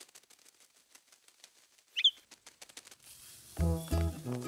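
A faint, fast fluttering patter, then a single short bird chirp about two seconds in, the loudest sound, from a small cartoon bird. Background music with a bass line comes in near the end.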